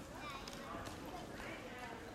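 Shopping-street ambience: faint voices of passers-by talking, with a few sharp clicks of footsteps on the paving.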